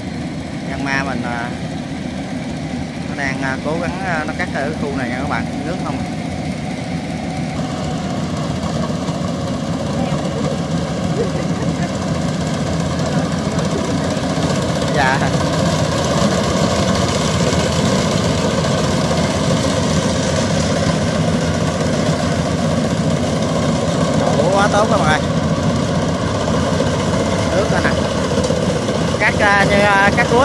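Yanmar combine harvester's engine running steadily as it harvests rice through a flooded paddy, growing louder as it comes close. A few brief voices break in now and then.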